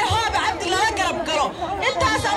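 Crowd of demonstrators with many voices talking and calling out over one another.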